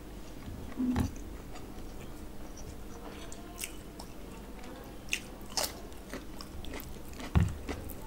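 Close-miked eating sounds: wet chewing of mouthfuls of mutton and rice, with sharp crisp crunches as a raw cucumber slice is bitten around the middle. Two low thumps stand out, about a second in and near the end.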